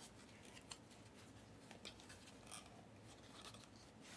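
Near silence, with a handful of faint, brief scrapes and clicks of cardboard and card being handled as a small trading-card box is opened by hand.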